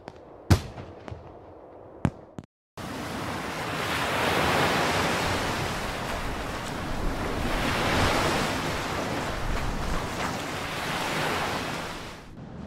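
A few distant fireworks banging in the first two seconds, one much louder than the rest. After a short break, sea waves wash against a rocky shore, the surf swelling and easing in slow surges.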